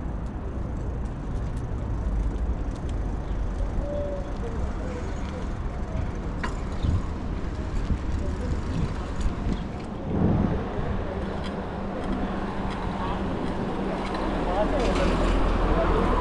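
Steady city street traffic noise, a low rumble of passing cars. There is a louder thump about ten seconds in, and the noise swells near the end.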